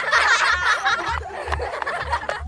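High-pitched laughing, a run of quick chuckles that goes on through the whole stretch.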